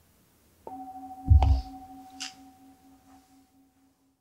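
A large singing bowl struck once with a striker, ringing with a low wavering hum and a higher steady tone that slowly fade; struck to close the talk. A loud low thump about a second and a half in, and a sharp click shortly after, sound over the ringing.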